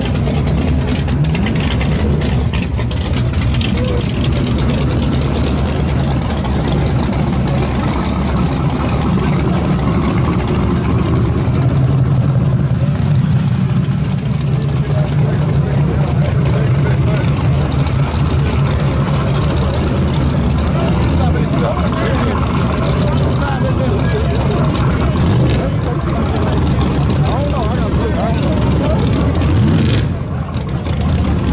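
A drag car's engine idling steadily, with a deep even rumble, under the loud chatter of a crowd.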